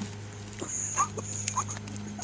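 A few short, rising animal calls, over a steady low hum, with a brief high whine about half a second in.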